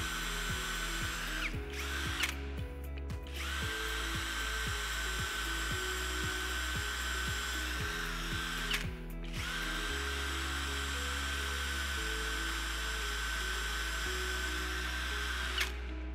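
Cordless drill boring through a solid-state lithium battery pouch cell: a steady motor whine that stops and restarts twice, about two seconds in and about nine seconds in, and cuts off near the end.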